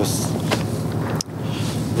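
Outdoor background noise: wind on the microphone over a steady low rumble, with a brief dropout a little past halfway.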